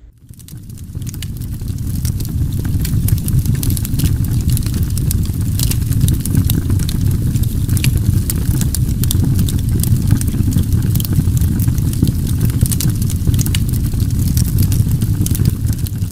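A steady low rumble, fading in over the first two seconds, with scattered crackles on top.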